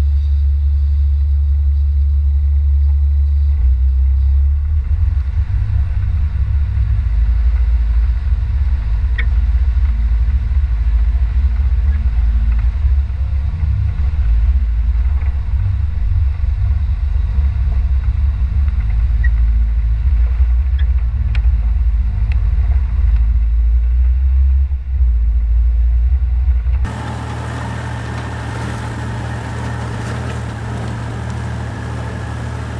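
Low, steady engine rumble of a four-wheel drive crawling up a rocky track, picked up by a camera mounted on its bonnet. About three seconds before the end it cuts abruptly to a quieter, thinner engine sound of a Jeep climbing over rocks.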